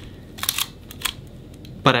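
Mechanical clicks from a Nikkormat FT2 35 mm film SLR as it is handled: two quick clicks about half a second in, then one more about a second in.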